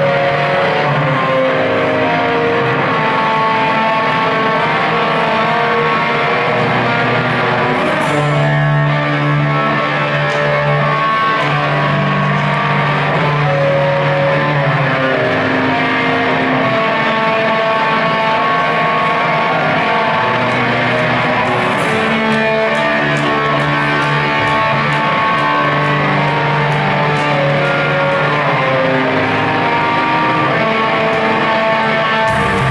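A live band playing a slow passage, with electric guitar notes held and ringing, changing every second or two.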